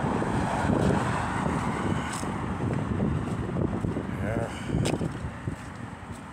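Street traffic: cars driving past on the road, a steady rushing noise that eases off after about four seconds, with wind on the microphone and a couple of sharp clicks.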